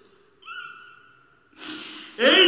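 A male preacher's voice through a stage PA microphone between chanted phrases: a short, faint high tone about half a second in, then a sharp intake of breath near the end.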